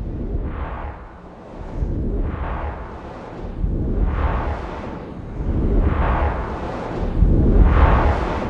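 Trailer sound design: a deep rumble under a series of about five swelling whooshes, one every second and a half or so, building in loudness so that the last, near the end, is the loudest.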